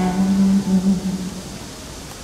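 One long sung note held steady, fading out after about a second and a half, over acoustic guitar.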